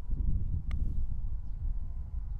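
A low rumble of wind on the microphone, with a single short, light click about two-thirds of a second in: a putter striking a golf ball.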